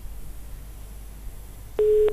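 A single short telephone-line beep, one steady tone near the end, heard over a phone-in call's faint low line hum.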